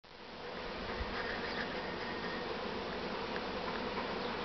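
Honeybees buzzing steadily around a hive entrance, a colony flying actively again after the winter's cold. The buzz rises in over the first half second, then holds even.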